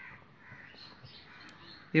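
Faint sounds of a pen writing on paper, with birds calling faintly in the background.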